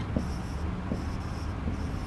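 Stylus writing on a touchscreen smart board: short scratchy strokes broken by light taps of the pen tip as a word is written by hand, over a steady low room hum.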